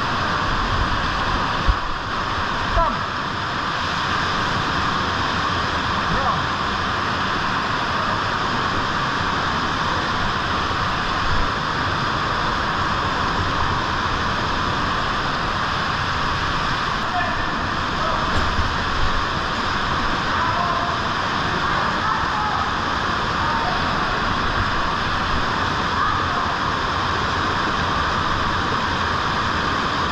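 Steady loud rush of a mountain canyon stream pouring down a rock chute into a pool, swollen to a high, fast flow by the previous day's rain.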